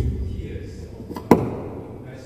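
Handheld microphone being handled: two thumps picked up through it, one at the start and a sharper one just over a second in, each trailing off in a low rumble.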